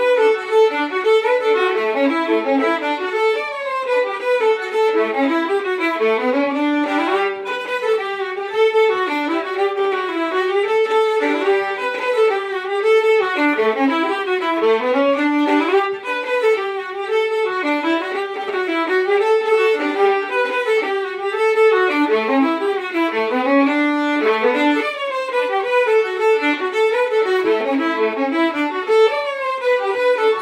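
Two fiddles playing a lively jig together, a continuous run of quick bowed notes.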